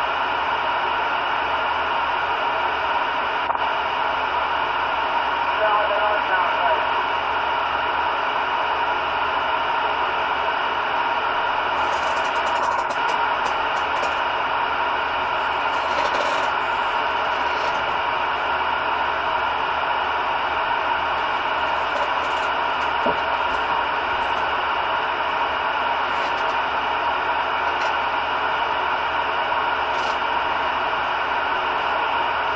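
CB radio receiver tuned to about 27.18 MHz in the 11-metre band, putting out steady static hiss, with faint, unintelligible voice fragments now and then coming through the noise.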